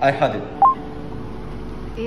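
A short, loud electronic beep of two quick notes, the second higher, like a phone keypad tone, about half a second in. A steady hum of several held tones follows.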